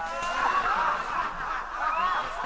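Audience laughing, many voices at once, loudest about half a second in.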